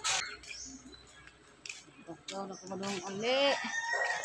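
A person's voice making short vocal sounds in the second half, after a brief knock or handling noise right at the start.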